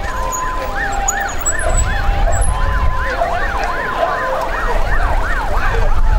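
Several electronic sirens sounding together, one wailing up and down about twice a second while another alternates between two steady tones, over a low rumble.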